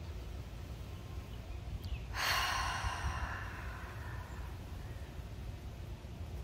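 A woman's deep cleansing exhale out through the mouth, a breathy sigh that begins about two seconds in and trails off over the next two seconds. A steady low wind rumble on the microphone lies underneath.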